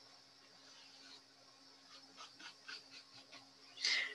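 Quiet room tone with a steady low electrical hum and a few faint, soft ticks in the second half, from a stylus drawing a line on a tablet screen.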